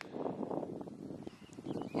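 Irregular rustling and crackling close to a handheld camera's microphone: handling noise.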